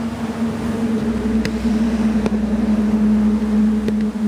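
A machine running with a steady, loud hum on one low pitch; a deeper rumble comes in about a second in, with a few light clicks.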